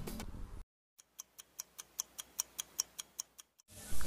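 Fast, even clock ticking, about five ticks a second, set against dead silence: a ticking-clock sound effect.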